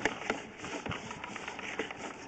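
Sewer inspection camera's push cable being fed down the line, giving irregular light clicks and knocks over a steady hiss.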